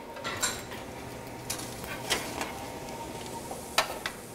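Metal spatula scraping and clicking against a sheet pan while roasted sweet potato wedges are flipped: a handful of short, light clinks and scrapes spread through the few seconds.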